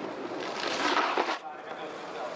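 Snowboard edge scraping across the hard-packed snow of a halfpipe wall: a hiss that swells about half a second in and cuts off suddenly just under a second later, as the board leaves the lip.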